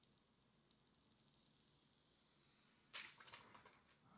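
Near silence, then near the end a short, faint rustle of thin plastic protective film being peeled off a smartphone's screen.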